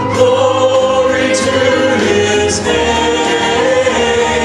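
Church praise team singing a hymn into microphones with keyboard accompaniment, voices holding long notes.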